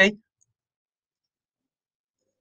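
A man's voice finishing a sentence with a brief 'okay?', then near silence.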